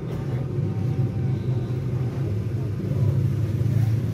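A steady low hum with a faint background rumble.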